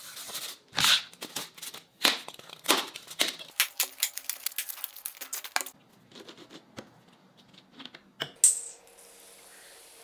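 Expanded polystyrene (styrofoam) being snapped and broken into pieces by hand, a rapid run of cracks and snaps over the first six seconds. It is followed by a few scattered clicks and one loud sharp crack about eight seconds in.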